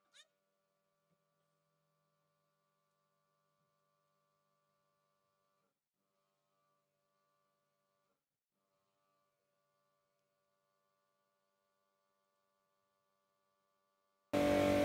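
Near silence: the sound track is all but empty.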